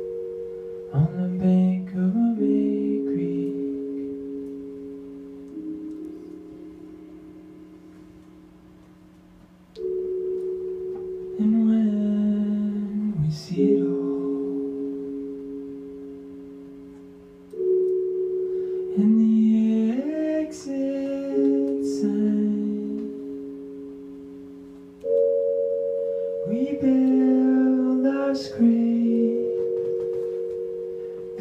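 Slow instrumental passage of a live song: held keyboard chords, a new one struck every few seconds and each fading away, with pedal steel guitar notes sliding upward beneath them.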